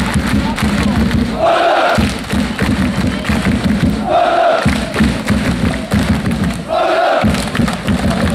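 Crowd of football supporters chanting together, a loud shouted call returning about every two and a half seconds over a steady low rumble.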